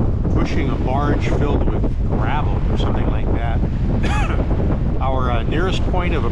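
Strong wind buffeting the microphone on a sailboat's foredeck under way, a steady low rumble throughout. A person's voice is heard faintly and indistinctly through it several times.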